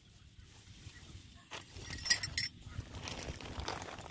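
Faint handling noises: cloth rustling and a few sharp clicks as gear is moved about. They start about a second and a half in and are loudest around the middle.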